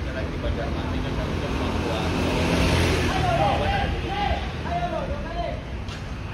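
Roadside traffic with buses: a diesel engine running with a steady low hum, passing traffic whose noise swells about halfway through, and people's voices in the background.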